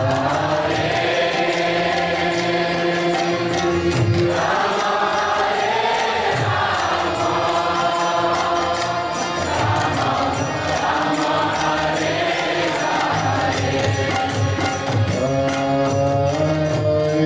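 Kirtan: voices chanting a devotional mantra to a slow melody over the held, reedy chords of a harmonium.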